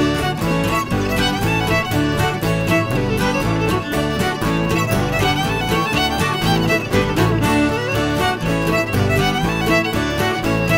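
A fiddle and acoustic guitars playing a lively tune together.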